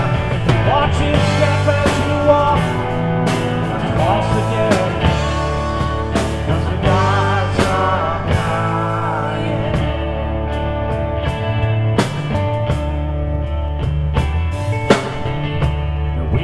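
Live southern-rock band playing a song, without lead vocals here: drum kit with cymbal crashes, acoustic and electric guitars over steady low bass notes.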